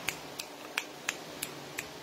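Finger snapping: about six light, sharp snaps, evenly spaced at roughly three a second.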